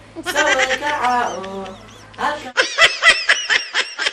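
A voice for the first couple of seconds, then, after an abrupt cut, an edited-in laughing sound effect: rapid, high-pitched, bleat-like cackles at about five a second, fading.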